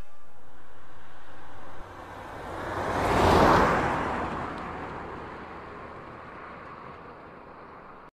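A steady hiss cuts off about two seconds in. Then the rushing noise of a vehicle passing swells to a peak a second and a half later and fades away slowly.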